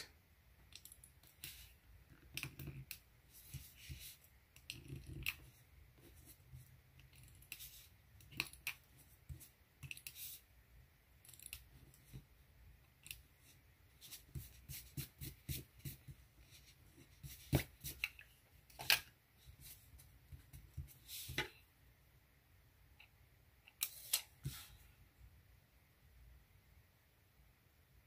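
Handheld correction tape dispenser run over planner paper in short strokes, giving faint, scattered scratchy clicks and scrapes, a few of them louder in the second half.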